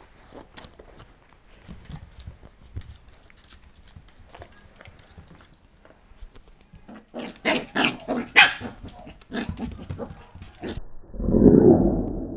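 Pembroke Welsh corgi puppy yapping, a quick run of short high barks in the second half, after several seconds of light scattered clicks and scuffles. A louder, lower burst of sound comes near the end.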